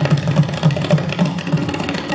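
Tabla solo: fast, dense strokes on the right-hand dayan with deep bayan bass strokes pulsing several times a second, over a steady harmonium melody line.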